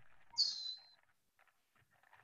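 A single short, high-pitched chirp lasting about half a second, sliding slightly down in pitch, heard faintly through a video-call microphone.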